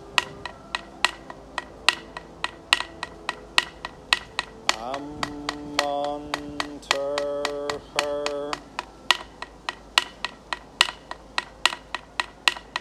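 Hand percussion: sharp wooden-sounding knocks at an even pace of about three a second. A little past the middle, a voice sings three long held notes over the beat, the first sliding up into its pitch.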